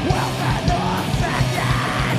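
Punk rock band playing live: electric guitars, bass guitar and drums with vocals, loud and steady.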